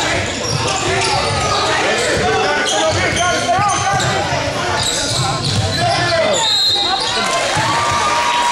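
Basketball game in an echoing gym: the ball bounces on the hardwood while many spectators and players shout over one another.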